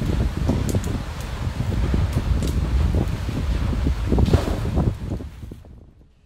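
Low, steady roar of a lava fountain at a Kilauea fissure, with wind rushing over the microphone and a few sharp crackles; it fades away about five seconds in.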